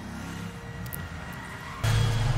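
Car engine running low under a soft held music tone, with a sudden louder low engine rumble starting near the end.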